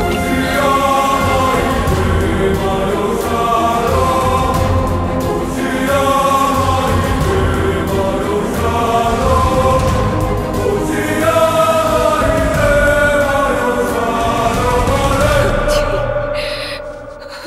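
Dramatic film score with a choir singing long, slowly moving held notes over a steady low bass.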